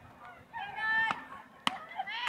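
A high-pitched shouted call from a voice about half a second to a second in, followed by a single sharp crack near the end.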